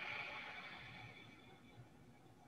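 Faint ujjayi (ocean) breath: a soft hiss of air drawn across a slightly tightened throat through the nose, fading away over about the first second and a half.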